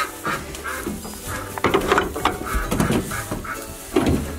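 A string of short farm-animal calls, several in quick succession, over a low steady hum.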